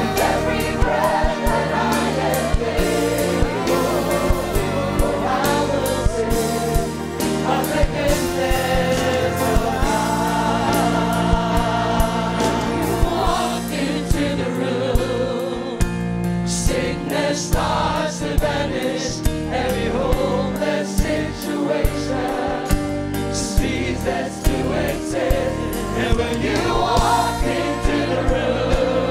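Live congregational worship music: a woman's lead vocal with backing singers over a band with a steady drum beat.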